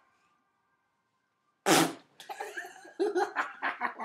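A raspberry blown against skin: one loud, short, wet fart-like splutter about a second and a half in, followed by laughter.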